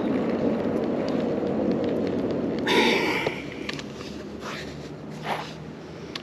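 Spinning reel being cranked, winding in slack line after a hooked fish has come off. There is a brief louder rush about three seconds in, after which the sound grows quieter.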